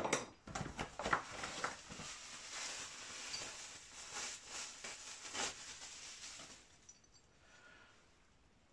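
Off-camera rustling and light clattering of parts being handled, with a sharp knock right at the start. The rustling dies away about seven seconds in.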